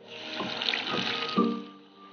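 Hot oil sizzling and bubbling hard as a handful of bubble-gum candies drop into it. The sizzle dies away after about a second and a half, with background music underneath.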